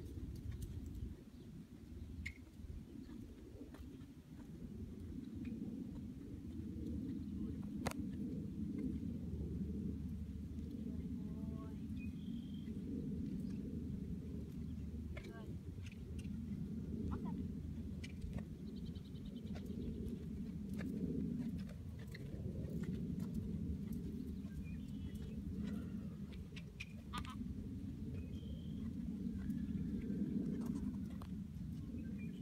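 A horse cantering on a longe line over sand arena footing: soft, muffled hoofbeats under a steady low outdoor rumble, with a few faint bird chirps.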